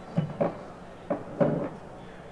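Four short, dull knocks in two close pairs, about a second apart.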